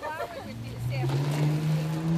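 A car engine running with a steady hum that starts about half a second in and rises slowly in pitch, with voices around it.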